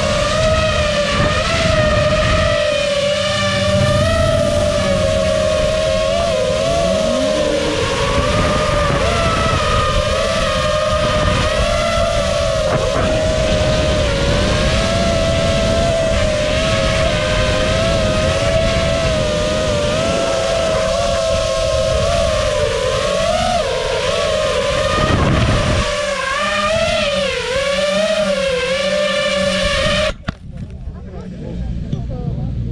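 FPV racing quadcopter's motors and propellers whining steadily, as heard from its own onboard camera, the pitch wavering slightly with throttle. The sound cuts off suddenly at the end as it touches down.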